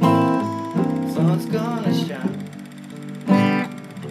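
Acoustic guitar playing a blues intro, a series of struck chords and picked notes left ringing.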